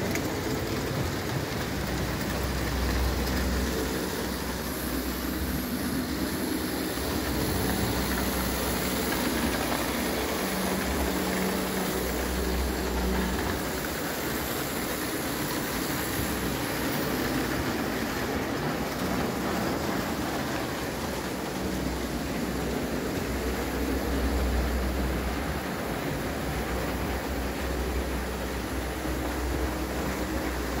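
JEP 0-scale tinplate electric locomotive running on three-rail tinplate track, a steady rattling clatter of metal wheels on tin rails with a low hum underneath.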